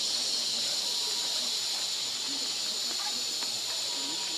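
Steady high-pitched insect drone with a thin whine above it, unchanging throughout, with faint voices talking underneath.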